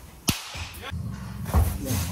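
Two sharp cracks of a pitched baseball's impact, one about a third of a second in and a louder one about a second and a half in, over a low steady background rumble.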